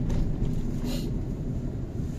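Car cabin noise while driving slowly in traffic: a steady low rumble of engine and tyres, with a brief rush of noise about a second in.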